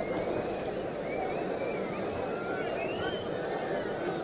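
Steady noise of a large football crowd in a stadium, with scattered individual voices carrying above it.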